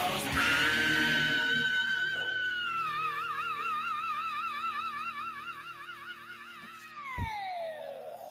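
Heavy metal singer's long, high final scream, held on one pitch, breaking into a wide vibrato about three seconds in and sliding down in pitch near the end, with the band playing beneath it.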